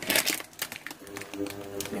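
Plastic packaging crinkling as it is handled: a dense burst of crackling at first, then scattered crinkles and clicks.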